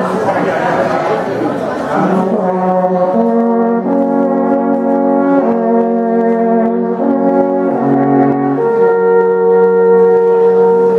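Three alphorns playing together in harmony, coming in about two seconds in and holding long chords whose notes change every second or so.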